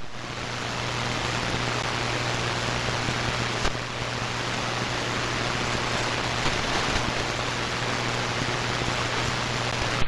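Shortwave receiver static: the steady hiss of an open 75-meter AM frequency with no station transmitting, under a steady low hum, with a single click just under four seconds in.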